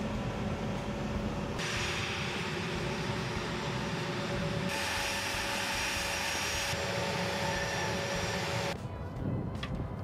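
Steady jet-engine noise on an aircraft flightline: a loud rushing hiss with a high whine over it. Its character changes abruptly three or four times.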